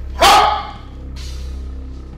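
Background film music holding steady low notes, opened about a quarter second in by one short, loud call that falls in pitch.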